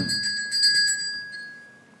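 A small bell ringing with a clear metallic tone. It is struck again about half a second in, then fades away over about a second and a half.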